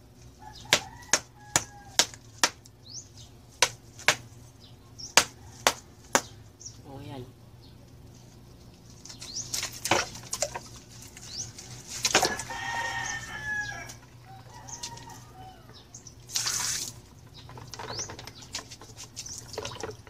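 About a dozen sharp clacks in the first six seconds: ice cubes being dropped into a plastic bucket. Quieter sloshing and handling of the ice water follow.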